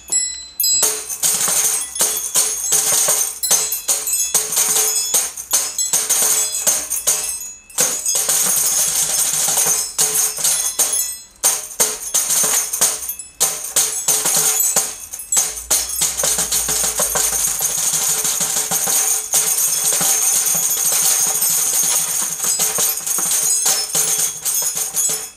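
Instrumental music driven by a fast, jingling, tambourine-like rhythm, with a few brief breaks in the beat.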